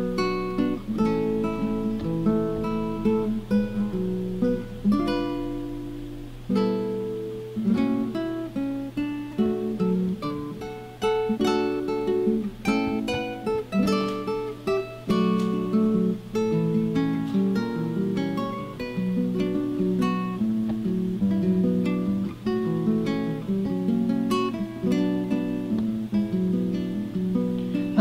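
Background music on acoustic guitar: plucked notes and strummed chords at a steady, unhurried pace.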